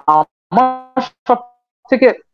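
A man's voice heard over a video call: a drawn-out hesitation sound held on one steady pitch and fading away, then two short voice fragments and a brief gap of dead silence before speech resumes.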